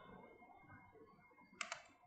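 A computer mouse button clicked once about one and a half seconds in, heard as two quick ticks close together, over faint room hiss.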